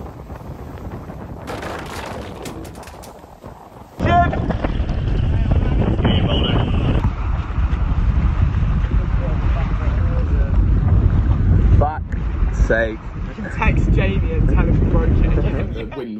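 Wind buffeting the microphone and water rushing along the hulls of a catamaran sailing at speed, growing much louder about four seconds in. Crew voices call out briefly a few times.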